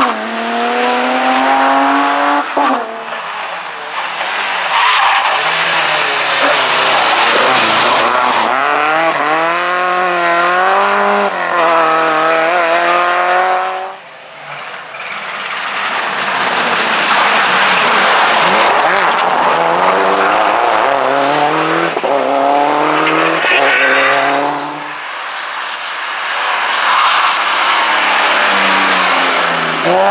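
Rally cars at full throttle, one after another, with engines revving hard, rising in pitch through each gear and dropping on the lift or shift, and tyres squealing and skidding. The middle car is a Subaru Impreza rally car.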